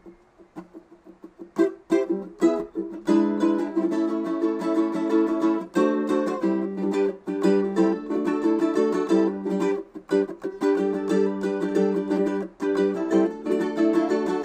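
Ukulele played solo as the instrumental introduction to a song: a few single plucked notes, then from about three seconds in a steady strummed chord pattern.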